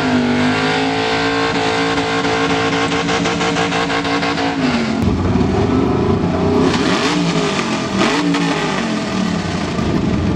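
A Camaro's engine held at steady high revs during a burnout. About five seconds in the revs drop and it turns rougher, with a few revs rising and falling as the car rolls forward.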